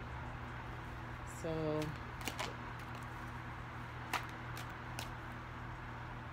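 A handful of sharp, light clicks, about five spread over three seconds, from hands handling small things on a tabletop, over a steady low electrical hum.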